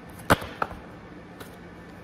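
A tarot card snapped down onto a tabletop: one sharp slap about a third of a second in, then a lighter tap just after.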